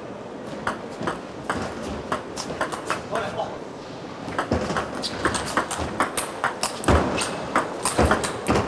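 Table tennis ball clicking crisply off rackets and the table during fast rallies, a few sharp clicks a second at uneven spacing. A heavier thump comes about seven seconds in.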